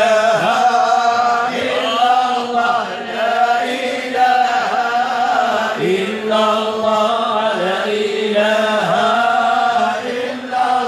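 A group of men chanting Moroccan amdah, devotional praise of the Prophet, together in unison without instruments, in long drawn-out phrases that break every couple of seconds.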